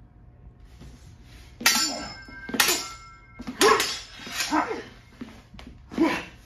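Steel stage-combat broadswords clashing: a run of sharp blade strikes about a second apart, starting a second and a half in, the first ones ringing on after impact.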